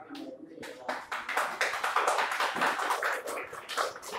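A small group of people clapping by hand, the applause building about a second in and carrying on.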